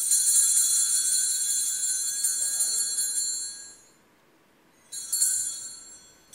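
Altar (Sanctus) bells ringing at the elevation of the consecrated host: a cluster of small bells rung for about four seconds and fading away, then rung again about a second later.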